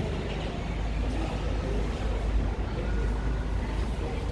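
Steady low rumble of outdoor background noise, even throughout, with no single event standing out.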